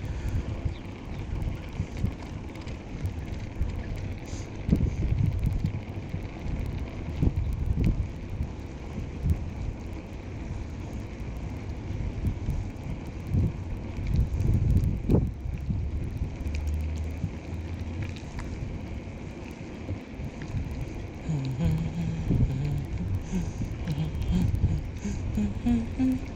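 Wind buffeting the microphone of a moving bicycle, over the rumble and small rattles of its tyres rolling across stone setts.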